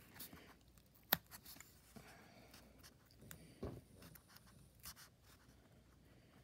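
Faint scratching and small clicks of a metal stiletto point working a hole in a paper template, with one sharper click about a second in.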